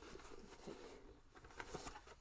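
Faint handling sounds of a zippered cosmetics case being opened and emptied: soft rustling with a few light taps and clicks near the end.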